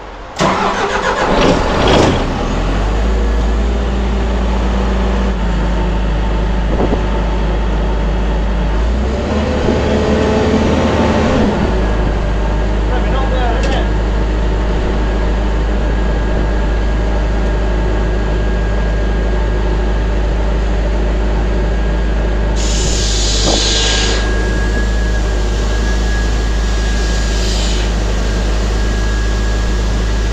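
Diesel engine of a towable site air compressor starting up and settling into a steady run. A short hiss comes about two-thirds of the way through.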